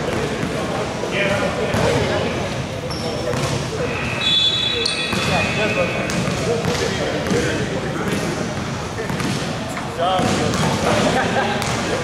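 Players and bench voices chattering in a large indoor sports hall, with a basketball bouncing on the court. A brief high squeak, like a shoe on the court floor, comes about four seconds in.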